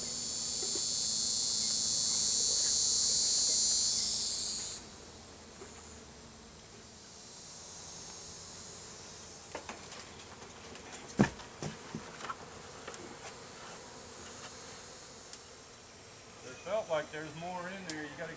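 Loud, high insect buzzing that builds and then stops abruptly about five seconds in, coming back fainter twice later. A single sharp knock comes about eleven seconds in, and voices start near the end.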